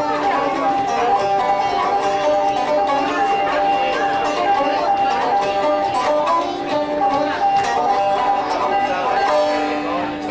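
Banjo played live: a quick, steady run of plucked notes over a high note that keeps ringing throughout.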